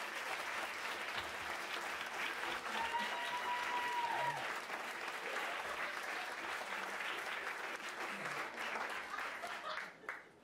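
Audience applauding in a small room after a song ends, with one held whoop from the crowd about three seconds in.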